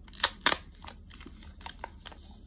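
Two sharp clicks about a quarter and half a second in, then lighter ticks and rustles: a wrapped snack package being handled on the table.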